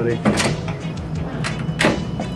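Glass office door with a keypad lock: two sharp clicks of the latch and door, one about half a second in and one near the end, over low background music.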